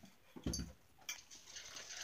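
Faint sounds of a pet eating dry food from a bowl: a soft thump about half a second in, then a few light clicks.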